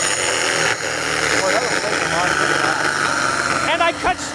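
Rotorazer Platinum compact circular saw running under load as it rips a strip off a wooden board along its parallel guide: a steady, high motor whine with the blade cutting through the wood.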